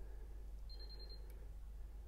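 Megger multifunction tester giving a single short, high-pitched beep about two-thirds of a second in while it runs a live prospective earth fault current test on its low-current setting, followed by a faint click. A low steady hum runs underneath.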